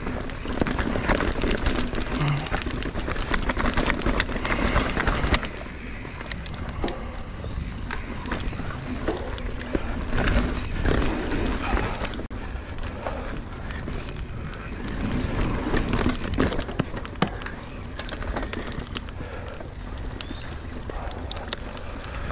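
Mountain bike riding on a dirt singletrack: a steady noise of tyres rolling on packed dirt, with frequent rattles, clicks and knocks from the bike over bumps.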